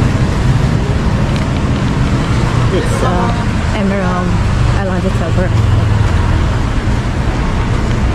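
Street ambience: a steady low rumble of road traffic, with brief snatches of people talking in the background.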